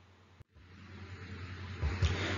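Faint room tone in a pause of speech: an even hiss over a low steady hum, growing slightly louder in the second half.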